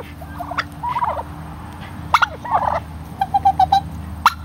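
Domestic white turkey toms gobbling and calling in several separate calls, with a quick rattling run of short notes near the end.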